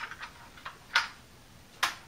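Sharp plastic clicks from the toy jet's internal thumb-wheel bomb drum being turned and bombs being pushed back into its slots: three loud clicks about a second apart, with a few fainter ticks between.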